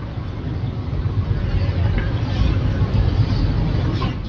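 Microphone handling noise at a lectern: a loud, low rumbling with faint rustle, as the microphone and lectern are touched and bumped; it stops abruptly just after the end.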